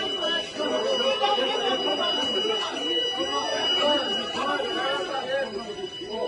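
Several distressed voices talking and calling out over one another, with a steady high-pitched electronic alarm tone sounding beneath them without a break.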